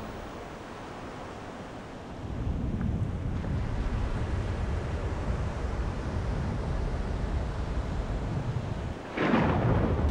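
Thunderstorm: a low rolling rumble of thunder that swells about two seconds in and keeps going, with a sudden louder burst near the end.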